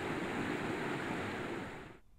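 Steady rushing noise that fades away just before the end.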